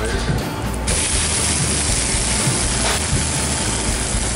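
Grilled cheese sandwich halves frying in butter in a hot frying pan: a steady sizzle that starts suddenly about a second in.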